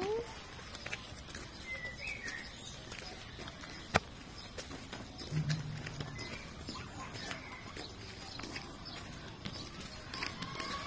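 Pony's hooves on a gravel yard as it is led at a walk: an uneven scatter of small clicks and crunches, with one sharp knock about four seconds in.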